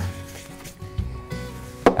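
Quiet background music with sustained tones, under light rubbing and handling on a bench: a dull knock about a second in and a sharper knock near the end, as a paper towel is wiped over a plastic battery case and a spray can is handled.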